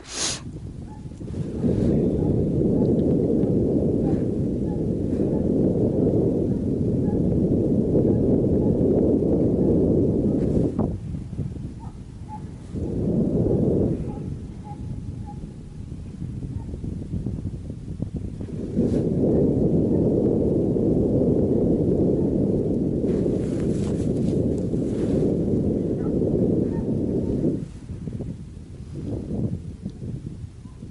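Wind buffeting the camera microphone in long gusts: a low rumble that drops away briefly about ten seconds in, returns for a moment, dies down again for a few seconds, then comes back and eases off near the end.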